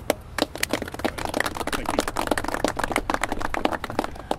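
Applause from a small group of people: many separate hand claps, thickening about a second in.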